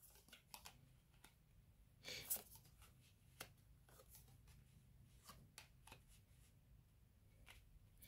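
Faint handling of tarot cards in near silence: a few soft taps and a brief rustle, loudest about two seconds in, as cards are dealt and laid down on a cloth-covered table.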